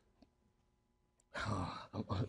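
After a near-silent first second, a man lets out a loud, breathy sigh about a second and a half in, lasting about half a second.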